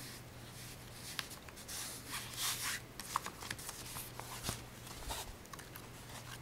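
Hands rubbing and smoothing canvas fabric over cardboard: soft rustling and rubbing, strongest around two to three seconds in, with a few light clicks and taps.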